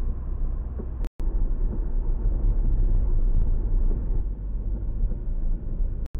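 Hyundai Tuscani engine and road noise as a steady low rumble inside the car's cabin while driving, cut off for a moment about a second in.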